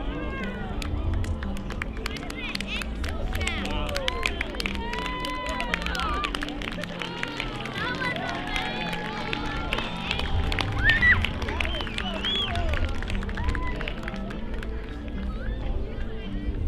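A crowd of many voices cheering and whooping, with scattered clapping, over background music with sustained low notes.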